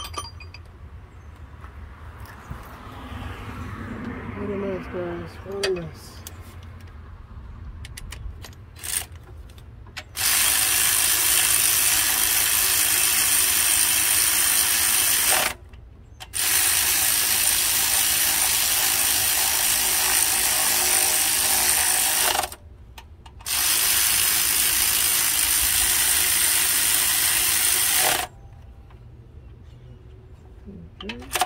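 Ratchet wrench run fast in three long spells of about five to six seconds each, with short pauses between, tightening bolts at the front of the engine.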